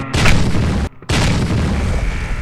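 Snowmobile crash into deep powder: a loud rushing rumble of snow and impact noise battering the helmet-camera microphone, cutting out abruptly twice.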